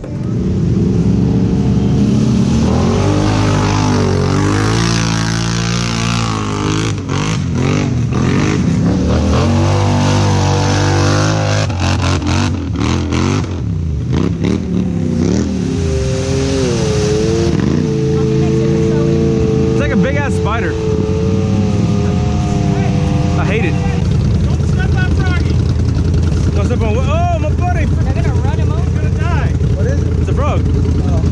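Polaris RZR side-by-side's engine revving in repeated rising and falling surges as its tyres spin and churn through deep mud.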